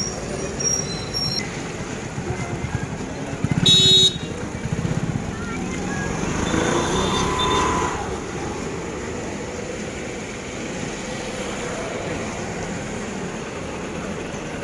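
Street traffic noise with motorcycles running, and a vehicle horn sounding once, about half a second long, a little under four seconds in; the horn is the loudest sound.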